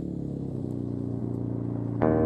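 A motor vehicle engine idling steadily, slowly growing louder.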